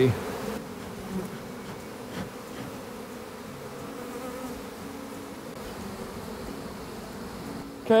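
Honey bees buzzing in flight around open beehives, a steady hum of many bees.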